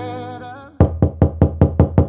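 An R&B song fades out, then rapid knocking on a door: about seven sharp knocks, roughly five a second, that stop near the end.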